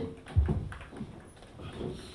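A few soft, low thumps against a quiet room background, the loudest about half a second in.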